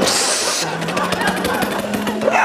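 A person's voice imitating a vehicle engine: a short hissing burst, then a fast rattling engine sound over a low steady hum.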